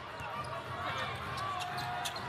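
A basketball being dribbled on a hardwood court during live play, a few short bounces heard over the steady sound of the arena crowd.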